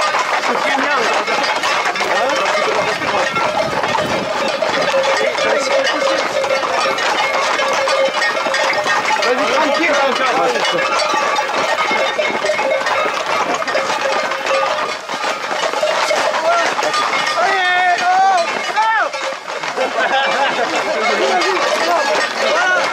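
A crowd of people shouting and calling over one another at close range, with one long wavering shout a few seconds before the end.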